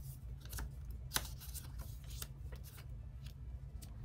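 Paper game cards being handled: the player cards being leafed through and laid down on the board, a scatter of light rustles and soft clicks with one sharper tap about a second in, over a faint low hum.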